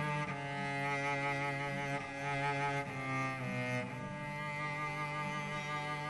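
Instrumental introduction to a song: slow, held notes that change pitch every second or so, with no singing yet.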